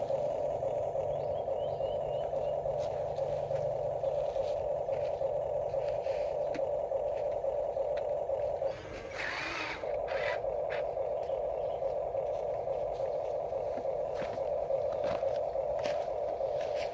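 Huina RC excavator's electric motors and gearboxes whining steadily as the arm and bucket work. Just past the middle the whine drops out for about a second under a short scraping rush, then resumes.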